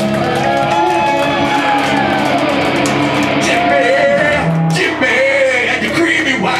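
Live band playing a song loudly in a small venue: electric guitar and drums, with vocals.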